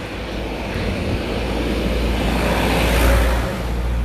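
Outdoor street noise: wind rumbling on a phone microphone mixed with road traffic, swelling to a peak about three seconds in and then easing.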